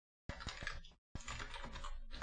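Typing on a computer keyboard: a fast run of keystrokes that starts a quarter second in, stops briefly about a second in, then carries on.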